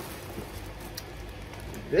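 Faint crinkling and rustling of a water-filled plastic fish bag being picked up and handled, with a few light clicks, before speech resumes near the end.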